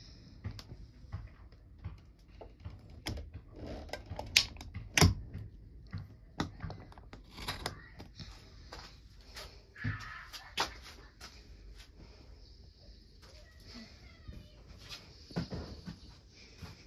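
A basketball bouncing on pavement, heard from indoors through an open door: a run of irregular thumps, the two loudest about four and five seconds in, over a faint steady high hiss.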